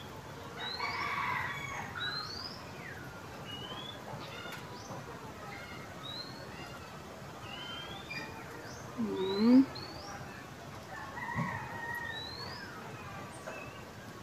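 Faint background of many short, rising bird chirps, with a rooster crowing faintly about a second in. A louder short low vocal sound comes about nine seconds in.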